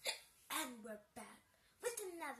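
A child's voice making short vocal sounds in separate bursts: a breathy burst right at the start, then several brief pitched utterances.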